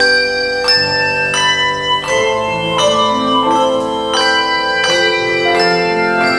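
A handbell choir ringing a piece in chords: a new chord is struck about every three-quarters of a second, and each one rings on under the next.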